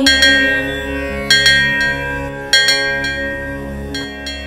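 Music without singing: bell-like struck notes, a few at a time, each ringing and fading over a steady low drone.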